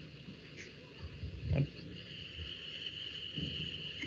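Quiet background with a faint steady high-pitched whine, and a brief soft sound about a second and a half in.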